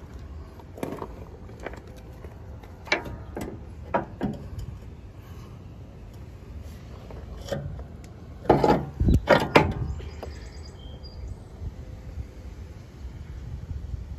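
Scattered knocks and clunks of hands handling parts and moving about the loader pivot. The loudest is a cluster of several knocks between about eight and a half and ten seconds in, over a steady low rumble.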